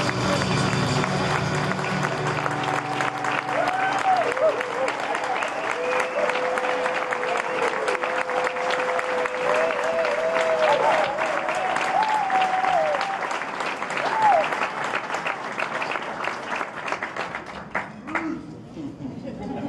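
Audience applauding and cheering after a song, with whoops and shouts rising and falling over the clapping and one long held call near the middle; the band's last notes die away in the first couple of seconds. The applause cuts off abruptly just before the end.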